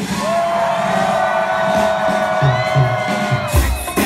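Live band music: one long held high note lasting about three seconds, with a few low hits under it, then the drums kicking back in near the end.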